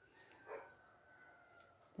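Near silence: room tone, with one faint short sound about half a second in.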